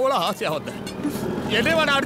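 Film dialogue: a man's voice speaking, with a low rumble under it in the middle between the phrases.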